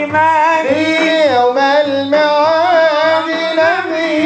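A man singing a devotional hymn into a microphone, his voice gliding and ornamented on long held notes, over a steady beat of frame drums.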